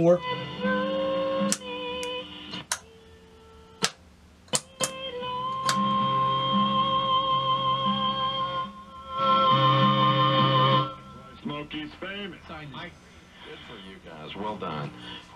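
NRI Model 34 tube signal tracer receiving AM broadcast stations through its small built-in speaker while its dial is tuned: stretches of music and held tones, broken by sharp static clicks and a weak, quiet patch between stations. The sound fades down near the end.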